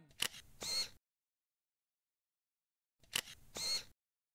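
Camera shutter sound effect, a sharp click followed by a slightly longer snap, heard twice about three seconds apart with dead silence between.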